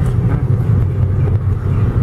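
Car interior noise: the engine and tyres giving a steady low rumble, heard from inside the cabin while driving slowly.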